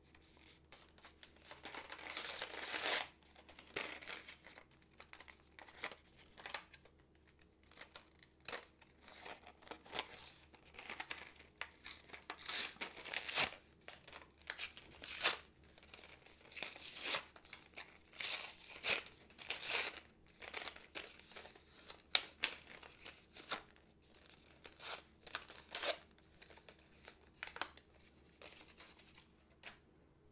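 Plastic blister pack with a card backing being pried, torn and crinkled open by hand, in irregular crackles and rips, with one sharp click about two-thirds of the way through.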